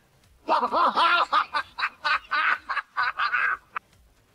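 A person laughing in a run of short bursts, starting about half a second in and stopping shortly before the end.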